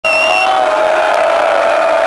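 Large crowd cheering and whooping, with several long held shouts standing out above the din.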